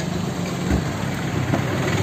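A motor vehicle engine idling with a steady rumble, with a short low thump under a second in.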